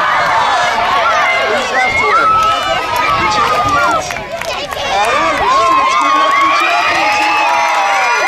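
A crowd of children shouting and cheering, many high voices overlapping, with a brief lull about halfway through.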